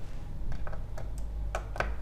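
Screwdriver backing out a small screw from an electric guitar's metal control plate: a handful of light, separate clicks as the bit turns in the screw head.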